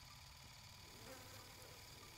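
Near silence, with a faint insect-like buzz.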